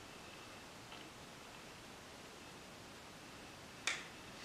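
Near silence: quiet room tone with a faint tick about a second in and one sharp click just before the end.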